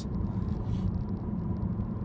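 Steady low road rumble inside the cabin of a moving Chevy Volt.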